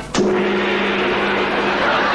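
A sudden loud strike about a fifth of a second in, then a steady low ringing tone that holds under a loud, even wash of noise.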